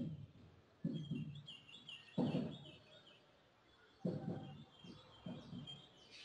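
Marker writing on a whiteboard: about five short knocks and scrapes as strokes are made on the board, with small birds chirping faintly in the background.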